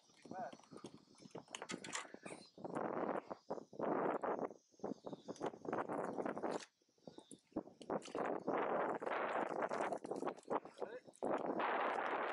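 Splashing water and wet aquatic weed rustling as a hand pulls a clump of weed from the water beside the boat, in irregular bursts with sharp clicks and knocks.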